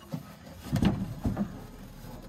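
Soft scuffs and light knocks of a hand pressing on and flexing a cracked fiberglass jet ski hull panel. A few irregular handling sounds come around the middle.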